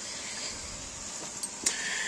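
Steady hiss of aquarium water moving from the tank's filter, with a single sharp click a little over halfway through.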